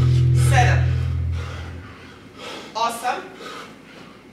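Rock music with a heavy bass line that cuts off about two seconds in, then a man's gasping exhalations, one every couple of seconds in time with each dumbbell snatch.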